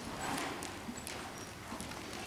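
Faint, evenly spaced hoofbeats of a Quarter Horse mare moving at a slow gait on soft arena dirt.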